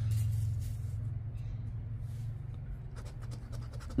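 A coin scraping the coating off a lottery scratch-off ticket in short strokes, mostly near the end, over a steady low hum.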